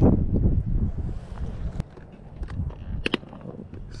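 Wind rumbling on the microphone, with a few sharp clicks from a spinning reel and rod being handled during a cast; the two clearest clicks come a little under two seconds and about three seconds in.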